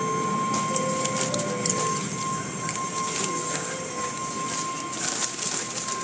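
Automatic car wash tunnel machinery running: a steady mechanical din with scattered rattles and clicks, over which a steady high-pitched tone sounds throughout.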